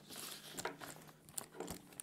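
Faint rustling and a few small clicks as an all-leather drum stick bag with brass hardware is handled and turned over in the hands.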